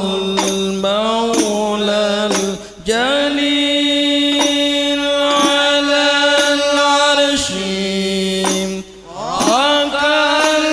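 Banjari-style sholawat: voices chanting Arabic devotional verse over frame-drum strokes. One long note is held for several seconds in the middle, with short breaths between phrases.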